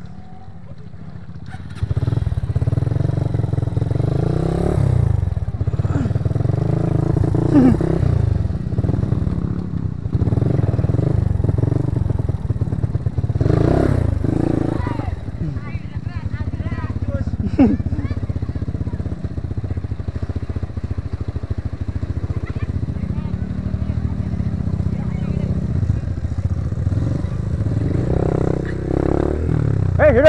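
Dirt bike engine running at low trail speed, rising and falling in pitch as the throttle is worked; it gets louder about two seconds in. A couple of brief knocks stand out along the way.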